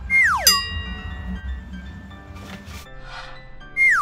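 Comic editing sound effect: a quick falling whistle-like glide straight into a bright ringing chime, over light background music. The same effect comes again near the end.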